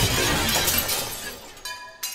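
A glass-shattering sound effect: a sudden crash that fades over about a second and a half, then a second hit with ringing, tinkling high tones near the end.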